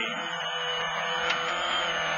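Subaru Impreza WRC rally car's turbocharged flat-four engine held at steady high revs inside the cabin, with a thin high whine over it and a steady wash of tyre and gravel noise.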